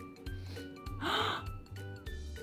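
Soft background children's music with a steady, repeating beat, and a woman's short gasp of surprise about a second in.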